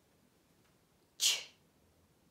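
A woman saying the phonics sound "ch" once, as a short sharp voiceless "ch" about a second in.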